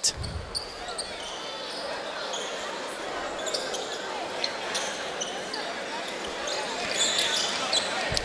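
Basketball game on a hardwood court: a ball dribbling and sneakers squeaking in short high chirps that come thicker near the end, over a steady background of voices.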